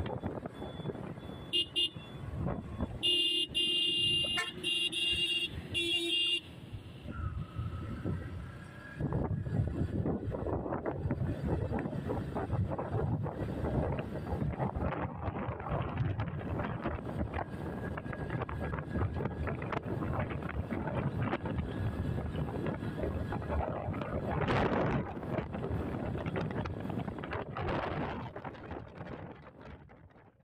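Vehicle horn sounding several short blasts about two to six seconds in, then steady road and wind noise from a vehicle travelling at highway speed.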